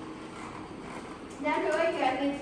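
Low room noise, then a woman's voice starts speaking about a second and a half in.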